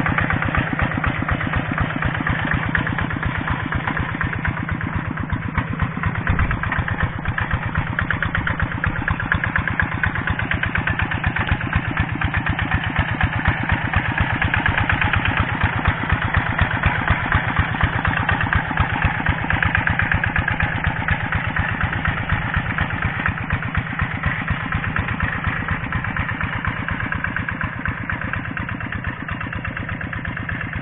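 Two-wheel hand tractor's single-cylinder diesel engine running steadily with a rapid, even beat while it pulls a harrow through the flooded paddy mud. The level eases off slightly near the end.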